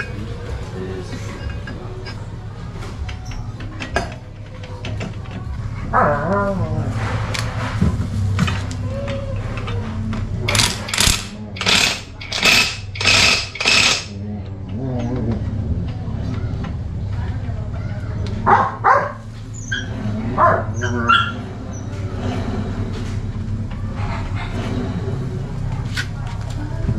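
A cordless impact driver running in five short bursts, about half a second each, tightening the axle nut on a scooter's new rear mag wheel. A steady low hum runs underneath, and a few more short, sharp sounds come later.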